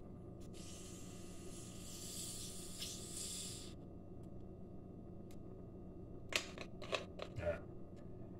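Carbonated soda hissing out of a plastic bottle as its screw cap is twisted loose: a steady hiss lasting about three seconds. A few sharp clicks follow near the end.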